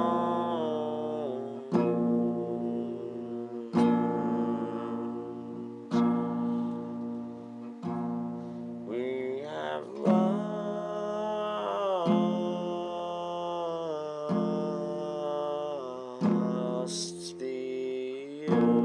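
Acoustic guitar being strummed, one chord struck about every two seconds and left to ring before the next.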